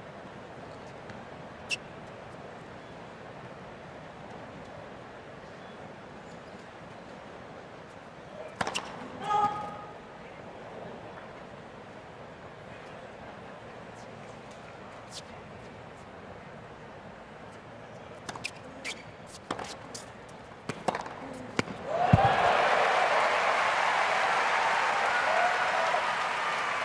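A point of a professional tennis match on a hard court: a hushed stadium, then racquet strikes and ball bounces in a quick run of sharp hits, followed by a crowd bursting into loud applause and cheers as the point is won.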